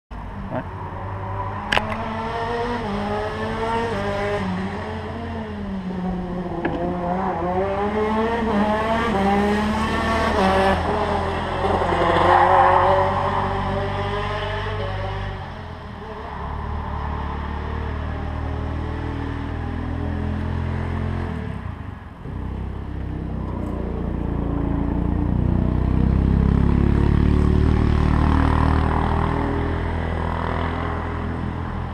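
Two-stroke racing kart engines running. For the first half their pitch rises and falls as they rev, then a steadier low engine note takes over, swelling again near the end; a sharp click comes about two seconds in.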